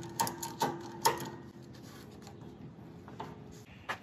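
Ratchet strap buckle clicking as it is worked, a few sharp clicks about half a second apart in the first second or so.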